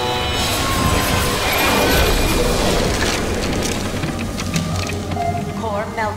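Cartoon blast sound effect: a rushing boom that swells to a peak about two seconds in and then fades, over dramatic background music.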